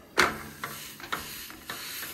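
A sharp slap about a quarter second in as a smash taco, a tortilla with the meat side down, goes into a hot frying pan on a propane camp stove. Then steady frying sizzle with a few small knocks of the pan.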